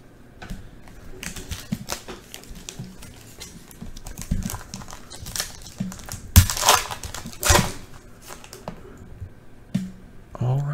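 Foil wrapper of a 2020 Panini Prizm baseball card pack crinkling and crackling as it is torn open by hand, with two louder rips of the wrapper about two-thirds of the way through.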